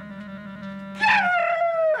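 A man's long, high-pitched cry of delight starting about a second in, held and sliding slightly down in pitch. Before it comes a steady low held tone.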